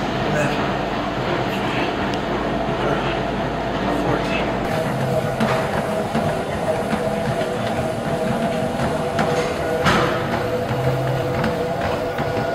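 Gym background noise: a steady machine hum and rumble with indistinct voices. The deepest part of the rumble drops away about five seconds in.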